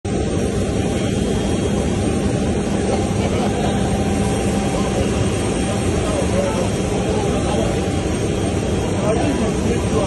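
Steady jet engine noise from a private jet on the apron, with people talking underneath.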